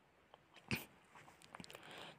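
Near silence, with one brief faint click-like sound about two-thirds of a second in and a few tiny faint noises near the end.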